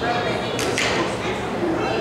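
Indistinct talking echoing in a large indoor hall, with a brief hissing burst about two-thirds of a second in.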